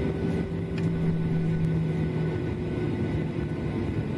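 Steady airliner in-flight drone: a constant engine noise with a low hum, the lowest hum tone dropping out a little past halfway.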